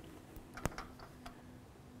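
A few faint clicks and light knocks from a metal C-stand as its riser column is raised by hand; the sharpest click comes about two thirds of a second in.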